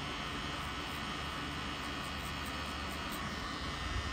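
Pen-style rotary tattoo machine running steadily while it packs red ink.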